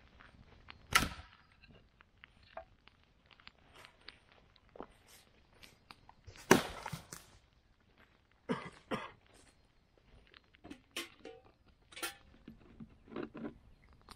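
Footsteps on dry forest litter and twigs, with sharp cracks and knocks of dry branches being handled for a campfire; the loudest come about a second in and about midway.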